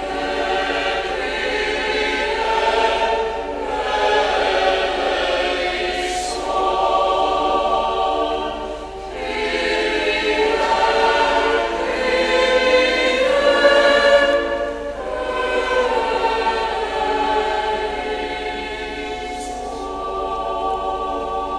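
A choir singing a slow sung response to a litany petition, in several sustained phrases with short breaks between.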